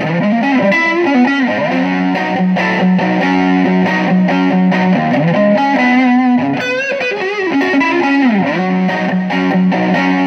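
Telecaster-style electric guitar fitted with an ashtray-style bridge and brass compensated saddles, played through high-gain distortion: a lead line of sustained notes with repeated string bends and vibrato.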